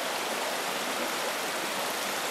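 Shallow mountain stream running over rocks, a steady even rush of water.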